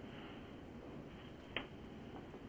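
Faint steady hiss with a single short, sharp click about three-quarters of the way through.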